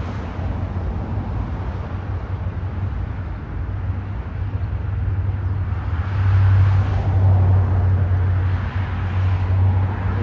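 Steady low rumble of traffic and idling vehicles, growing louder about six seconds in.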